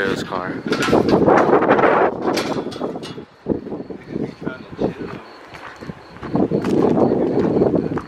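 Indistinct talking from people nearby. It fades to a quieter stretch with a few light scattered clicks midway, then picks up again near the end.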